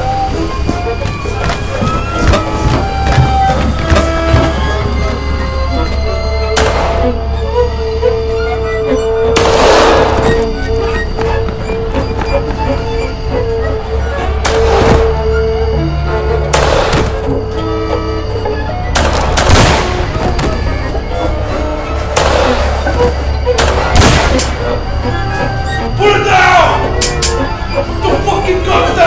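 Dramatic film score with a steady bass and held tones, cut by several loud gunshots spread through the passage as a shootout plays out.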